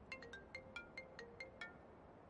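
A mobile phone ringtone: a quick, quiet run of short, bright plinking notes, about six a second.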